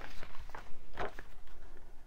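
Large paper sheets rustling and sliding as they are picked up and turned by hand, with a few short crinkles.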